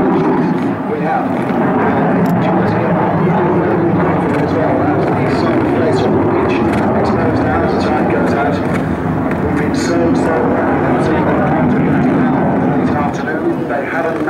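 Saab 37 Viggen's single Volvo RM8 turbofan: loud, steady jet noise as the delta-wing fighter flies its display, easing slightly near the end.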